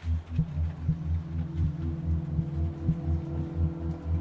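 Soundtrack music: a low synthesized bass pulse beating about three times a second, like a heartbeat, under steady sustained tones.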